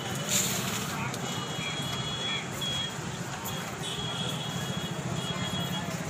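Busy street ambience heard from above: steady traffic noise with a murmur of crowd voices, and short high-pitched beeps sounding again and again. A brief noisy burst about a third of a second in is the loudest moment.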